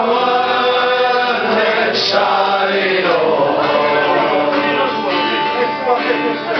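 Men singing a chant-like song, several male voices together without a break.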